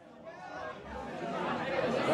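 Chatter of several voices in a room, fading in from silence and growing steadily louder.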